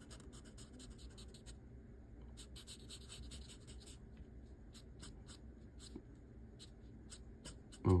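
Sharpie felt-tip marker scratching faintly across paper in quick short strokes, in several runs with brief pauses between them.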